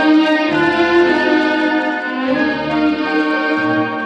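Orchestra playing an instrumental passage between sung verses of an operetta ballad, violins carrying the melody in long held notes over lower strings and a bass line. The music eases off a little near the end.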